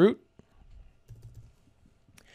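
Computer keyboard typing: a few faint, scattered keystrokes as a password is entered.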